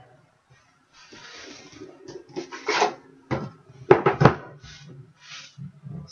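Handling noises on a desk: rustling and scraping from about a second in, then a few sharp knocks around the middle, as the camera is lowered and a boxed trading-card pack is slid into place.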